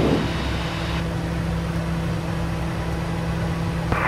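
Steady cockpit drone of a Piaggio P180 Avanti in the climb: its twin pusher turboprops and the airflow make a constant low hum over an even rushing noise.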